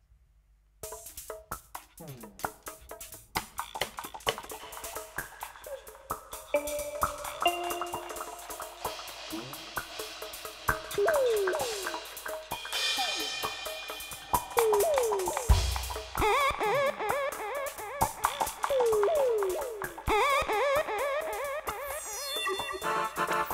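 Live electronic music starting abruptly about a second in: rapid clicks and percussive hits with repeated falling electronic swoops, growing louder.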